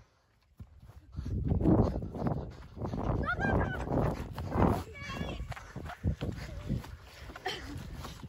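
Wind and handling noise rumbling on a handheld camera microphone as the person filming runs across grass, after a moment of silence at the start. Short distant shouts from players come through about three and five seconds in.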